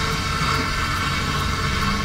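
Electric drill with a quarter-inch bit running steadily as it bores a hole into a concrete wall.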